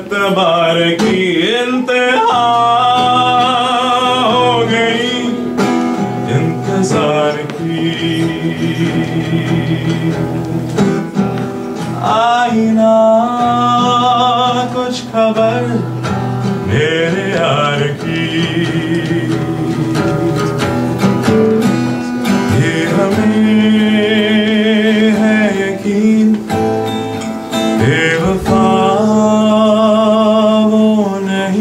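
A man singing live to his own acoustic guitar accompaniment. He sings in phrases a few seconds long, with long held notes that waver.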